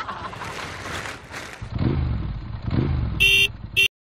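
Motor scooter engine revving twice, each rev rising and falling in pitch, after a short stretch of steady hiss. Near the end its horn gives two short beeps, the second briefer.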